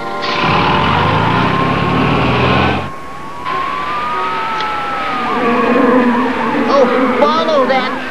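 Cartoon vehicle sound effect: engine and tyre noise for about three seconds, cutting off abruptly. Slow rising and falling tones follow, with music.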